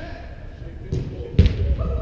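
Soccer ball struck twice on an indoor artificial-turf pitch: two sharp thuds about half a second apart, the second louder, in a large hall. Voices are heard under them.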